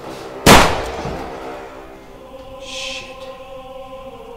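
A single loud pistol shot about half a second in, with its echo dying away over about a second, over sustained choral music. A short high hiss follows near three seconds.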